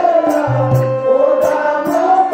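Stage-drama verse singing: one voice holds a long, wavering, ornamented note over drum strokes at a steady beat, about four or five a second.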